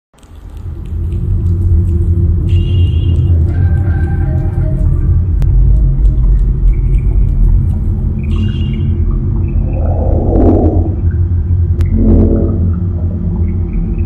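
Horror-style intro soundtrack: a loud, deep rumbling drone that swells in over the first second and holds steady. Sparse high tones sound over it, with a short burst of noise about ten seconds in and a brief pitched sound about two seconds later.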